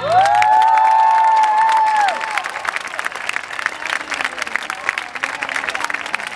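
Audience applauding and cheering at the end of a song, with several high whoops held for about two seconds over the clapping, then steady applause.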